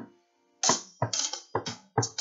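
Acoustic guitar strummed in short, sharp chord strokes. One stroke opens, then comes a brief pause, then a quick, uneven run of choppy strums from about half a second in.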